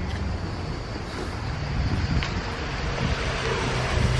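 Steady outdoor road-traffic noise with a low hum underneath, mixed with wind rushing on the microphone.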